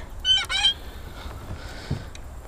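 A bird calling: two short, high calls in quick succession a fraction of a second in.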